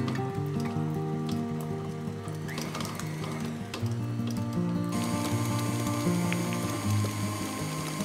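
Acoustic guitar music over a KitchenAid stand mixer running, its flat beater creaming butter in a glass bowl; the mixer's noise grows brighter about five seconds in.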